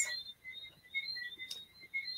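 Faint chirping in the background, short high peeps repeating several times a second, with a single click about one and a half seconds in.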